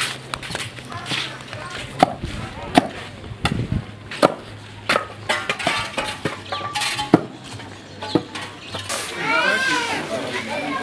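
Scattered sharp knocks and clinks at irregular intervals, under scattered voices of adults and children. The voices grow louder and busier near the end.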